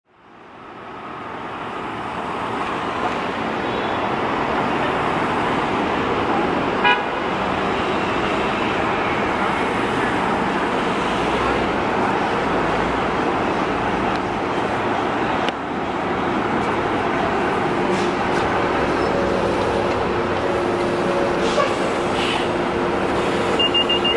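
Steady city street traffic noise with a Nova Bus LFS city bus running as it pulls up, a short horn toot about seven seconds in. Near the end a rapid, high beeping starts as the bus stands at the stop.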